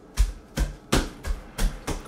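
A child's heavy stomping footsteps on the floor: about six thudding steps, roughly three a second.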